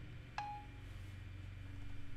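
Faint iPhone 4S Siri dictation tone as Done is tapped: a click and a single short chime a little under half a second in, marking the end of dictation before the text is typed out. A steady low hum runs underneath.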